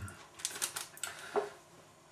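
A few light clicks and taps in the first second and a half as a metal teaspoon and a spice packet are handled on a wooden kitchen counter.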